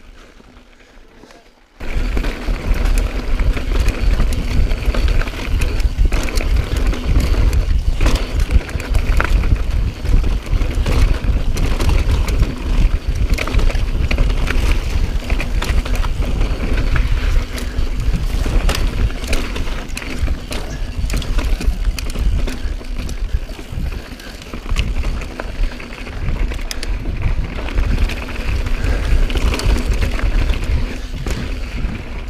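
Mountain bike riding fast over rocky, gravelly desert singletrack: tyres crunching over rock and loose stones and the bike rattling, with heavy wind buffeting on the microphone. The sound comes in suddenly about two seconds in and runs on as a loud, dense rumble full of small clicks and knocks.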